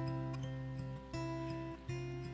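Acoustic guitar strumming sustained chords, with a fresh strum about a second in: the instrumental introduction to a congregational hymn.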